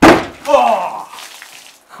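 A 20-litre metal drum imploding with a loud bang as the steam inside condenses under cold water and air pressure crushes it, then a smaller crack about half a second later. A man's voice exclaims over it.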